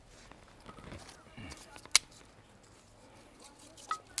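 Sticks of kindling handled and pushed into a small metal coal stove, quiet rustling with one sharp click about two seconds in and a smaller one near the end.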